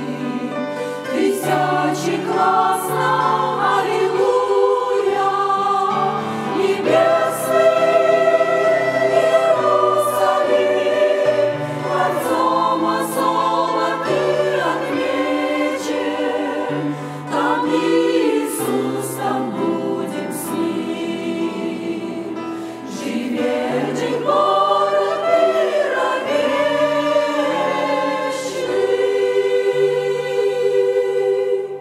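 Women's church choir singing a hymn, with several voices holding sung notes together all the way through.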